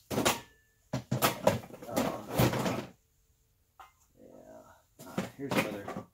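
Metal pressure-washer fittings and unloader parts clattering as they are handled and tossed aside, in irregular bursts: a long cluster about a second in and another near the end.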